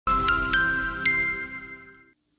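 Intro jingle: four quick bell-like chime notes, each higher than the last, over a held chord that rings on and fades away.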